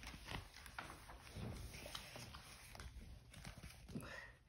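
Faint handling of a paperback book: scattered soft taps and paper rustles as the pages are handled and the book is closed, with a slightly louder knock near the end.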